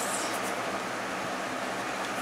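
Steady whooshing background noise of an electric fan running in the room, with a faint low hum.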